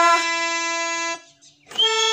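Harmonium holding a steady reed note as the last sung note fades, then stopping about a second in; after a short gap, new harmonium notes start near the end.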